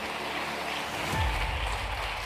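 Steady hiss of background noise in a pause between spoken phrases, with a slight swell a little past the middle.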